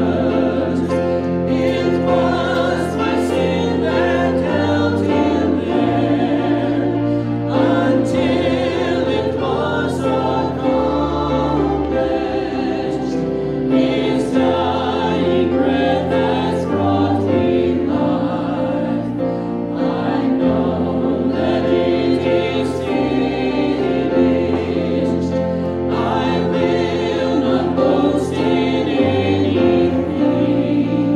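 Congregation singing a slow worship song with instrumental accompaniment, the bass notes held and changing every second or two.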